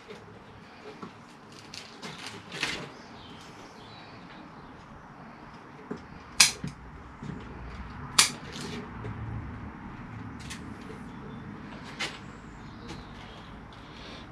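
Bonsai scissors snipping through beech roots in a root ball, a short sharp snip every second or two at an uneven pace, the loudest cuts about six and eight seconds in.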